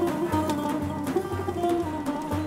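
Background music: a plucked string instrument playing over a repeating bass line.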